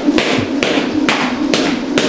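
Jump rope skipping: the cord slaps the gym floor mat and the feet land lightly, giving regular sharp taps about twice a second, each with a brief swish.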